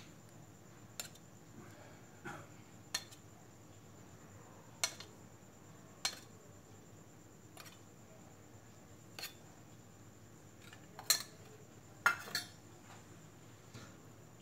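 Steel spoon clinking against stainless steel bowl and tray while sauce is spooned out: about ten separate sharp clinks every second or so, the loudest near the end.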